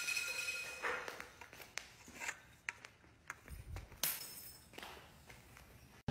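Broken glass after a shatter: a ringing tone dies away in the first second, followed by scattered faint clinks and ticks of glass pieces that thin out to near silence.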